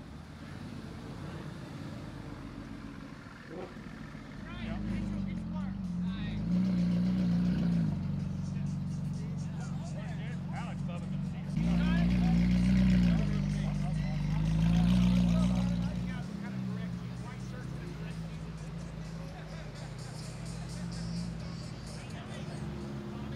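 Sports car engines revving and pulling away one after another, in swells that rise and fall, loudest about twelve and fifteen seconds in.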